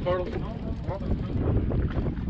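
Steady low wind rumble on the microphone, with a voice speaking briefly in the first second.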